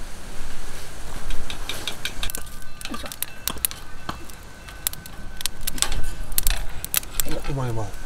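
An open wood fire crackling under a steel grill, with irregular sharp snaps and metallic clinks of cooking tongs against the grate. A voice is heard briefly near the end.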